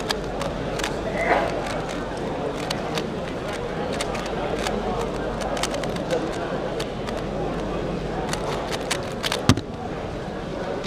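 Rapid, irregular clicking of a 3x3 speed cube being turned by hand, over a steady babble of voices in a large hall. One sharper knock comes near the end.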